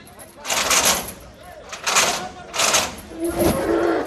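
Men's voices shouting in short, loud bursts, three in quick succession, then a held, lower-pitched call in the last second.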